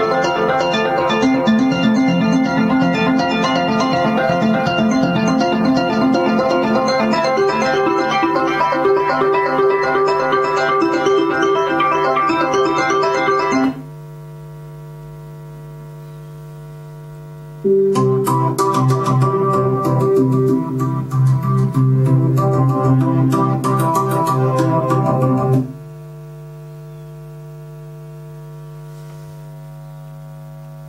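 Waldorf Blofeld synthesizer playing arpeggiator presets: a busy repeating arpeggio pattern for about the first fourteen seconds, then a second arpeggio patch for about eight seconds. In the gaps between patches a steady electrical hum remains, which the owner suspects comes from poorly shielded connecting leads.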